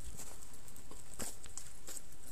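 Footsteps on loose stones and gravel, about one step every half second, with light rustling of brush.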